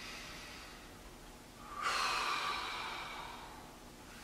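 A person taking a slow deep breath: a faint intake, then about two seconds in a long breathy exhale that gradually fades.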